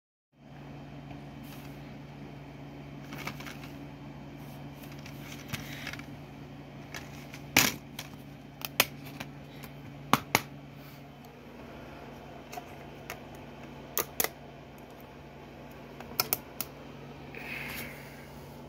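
Sharp plastic clicks and handling noises as a DVD case and disc are handled and the disc is loaded into a portable DVD player, over a steady low hum. The clicks come singly and in quick pairs, loudest about halfway through.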